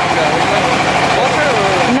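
A generator running with a steady, even engine hum, kept going to keep the ice cream shop's freezers cold. A man's voice talks over it.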